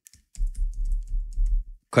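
Typing on a computer keyboard: a quick run of keystrokes as a new name is entered, over a low steady hum.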